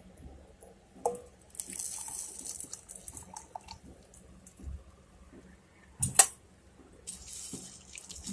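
Sugar syrup poured from a steel pan onto fried boondi in a glass bowl, with liquid pouring and dripping. A sharp clink sounds about six seconds in.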